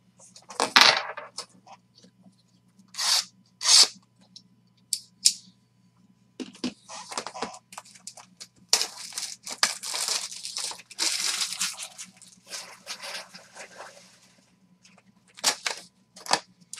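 Plastic shrink-wrap torn and crinkled off a cardboard trading-card box: a few short rips, then a longer stretch of continuous crinkling and rustling as the box is opened.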